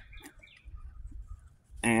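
Faint, scattered bird chirps over a low rumble, then a man's voice starting to speak near the end.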